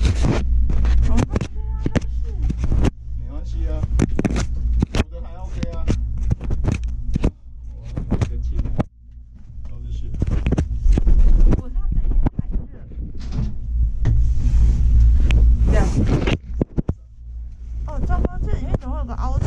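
Handling noise close to the camera: rustling fabric and repeated knocks and scrapes, over the steady low rumble of a moving gondola cabin, with snatches of quiet talk.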